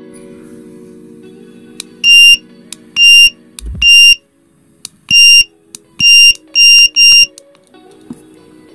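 PHEN TickTime magnetic digital timer beeping: seven short, loud, high beeps in uneven groups as its alarm sound is adjusted with the side buttons, with small clicks between the beeps.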